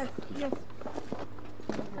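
Footsteps of several people on paving stones, a few separate sharp steps, with a brief spoken word early on.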